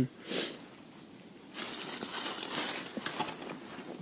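Rustling and crinkling close to the microphone from gloved hands handling fishing tackle and a just-caught small perch. There is one brief burst about a third of a second in, then a longer stretch of rustling with small ticks from about a second and a half to three seconds.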